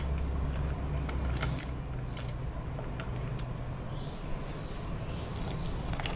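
Quiet kitchen handling at a cooking pot: a few scattered light clicks and taps, the sharpest about three and a half seconds in, over a steady low hum.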